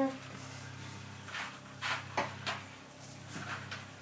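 A few soft, scattered clicks and knocks over a low steady hum.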